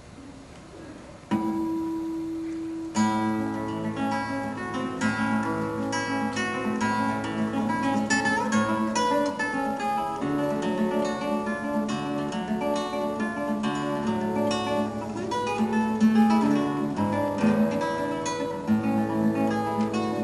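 Solo classical guitar. After a quiet first second, a single note rings, then from about three seconds in a continuous plucked piece follows, with bass notes under the melody.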